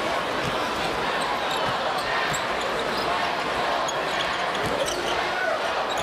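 Basketball arena game sound: a steady crowd murmur with a basketball being dribbled on the hardwood court and scattered short high squeaks of sneakers.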